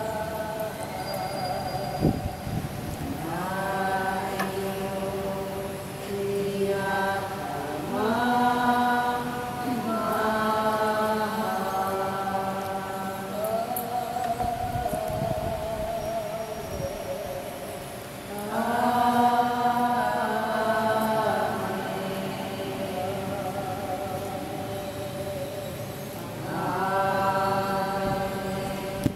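A congregation singing a slow chant-like worship song together, in long held phrases that swell and fade.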